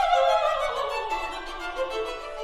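Solo violin playing a quick run of notes falling in pitch, then a few short notes, as a sung note from the soprano ends at the start.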